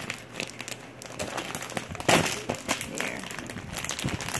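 Thin clear plastic packaging of a mochi tray crinkling and crackling as it is handled and opened, in a run of sharp crackles with the loudest burst about two seconds in.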